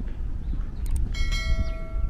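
Subscribe-button animation sound effects: a short click about a second in, then a bright notification-bell ding whose ringing tones fade out before the end. Underneath is a steady low rumble from wind on the microphone.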